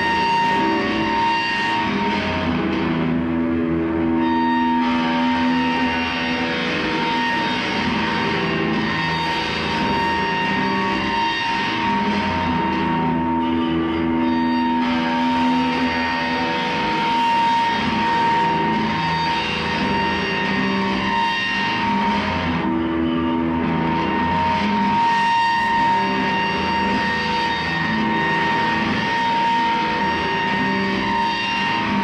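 Electric guitar played loud through an amplifier as a dense, noisy drone, with one steady high tone held throughout. Lower sustained notes swell in and fade out several times, about every nine or ten seconds.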